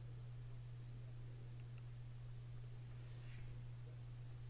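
Two quick computer mouse clicks about a second and a half in, over a steady low hum. A brief soft rustle comes about three seconds in.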